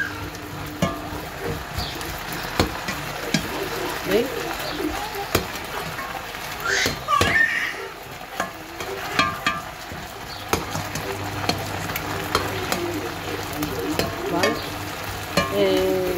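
Pork loin steaks sizzling in a pan of hot oil and meat juices. A metal slotted spoon stirs and turns them, scraping and tapping against the pan at irregular moments.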